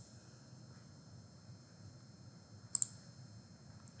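Computer mouse button clicked, heard as two quick sharp ticks close together nearly three seconds in, over faint steady room hiss.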